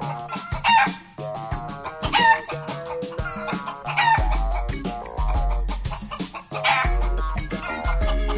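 Four chicken calls laid over background music with keyboard notes. A deep bass line comes in about halfway through.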